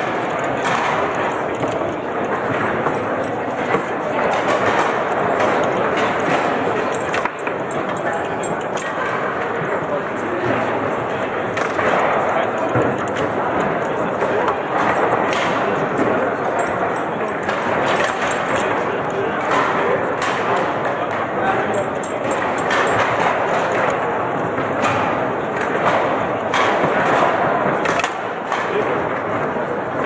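Foosball match on a Lehmacher table: the ball and the plastic figures clack sharply and irregularly as shots are struck and blocked, over the steady chatter of many voices.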